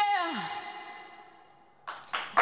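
A woman's last sung note, held with vibrato, slides down in pitch and falls away as the backing music rings out and fades almost to silence. A sudden noisy burst starts near the end.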